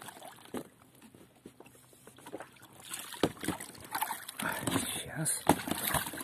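Water sloshing and splashing as a foam float is hauled by its rope out of the sea and into an inflatable boat, with several sharp knocks and scrapes as it comes over the side, starting about three seconds in.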